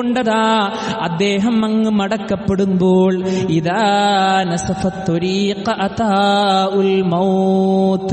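A man's voice reciting Arabic in a melodic chant, typical of Quranic recitation: long held notes with ornamented turns, broken into phrases.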